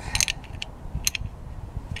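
A few light metallic clicks and rattles as small metal tools or bike parts are handled, three or four sharp ticks spread through the two seconds.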